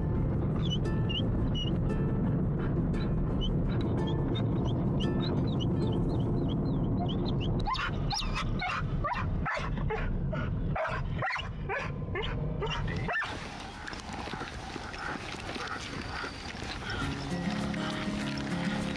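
An Old English Sheepdog whining in short, high, repeated calls about three a second, then breaking into a run of sharp yips and barks, over the low rumble of a moving car; the calls stop about 13 seconds in and background music carries on.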